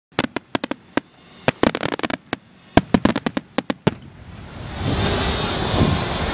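Firework crackle: a rapid, uneven run of sharp pops over the first four seconds. After that a steady rushing noise builds up and holds to the end.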